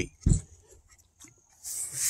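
A heavy battery pack is set down on a folded towel, giving one short, soft low thud just after the start. Near the end comes a breathy hiss, an intake of breath before speaking.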